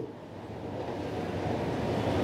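A low background rumble with no clear tone that grows steadily louder.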